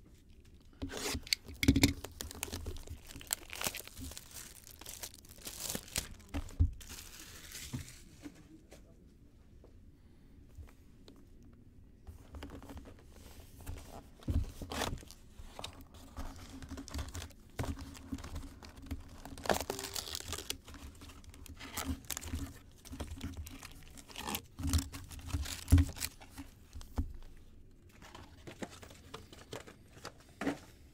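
Plastic shrink wrap being cut and torn off a cardboard box of 2019 Topps Fire baseball cards, then the foil card packs rustling as they are pulled out of the box and stacked. Irregular crinkling and tearing, with a few sharper knocks.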